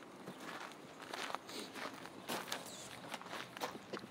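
Footsteps on loose gravel: a string of uneven crunching steps.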